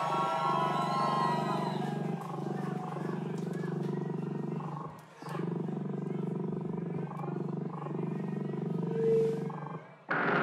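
Distorted low electronic drone: a dense, steady rumbling noise with gliding higher tones over it early on. It drops out briefly about halfway through and again just before the end.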